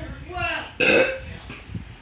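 A man's short groan, then a loud, rough burst from the throat about a second in, a burp or a forced cough. He is in burning pain after swallowing ghost pepper hot sauce.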